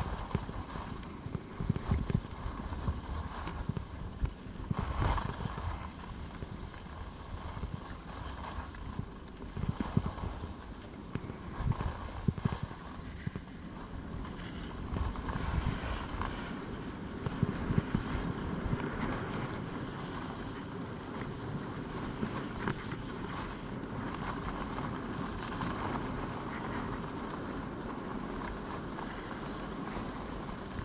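Skis scraping and hissing over packed snow on a downhill run, with rushing air on the microphone. Irregular knocks come through in the first half, then the rush grows steadier.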